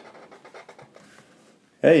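Black felt-tip marker drawing on paper: faint, quick scratching strokes. A man's voice comes in near the end.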